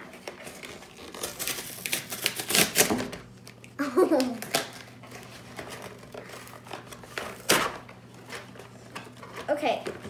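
A cardboard cake-mix box being pulled and torn open by hand: crackling rips and rustling of the cardboard, loudest a couple of seconds in and again with one sharp rip later. A brief vocal sound from the child comes about four seconds in.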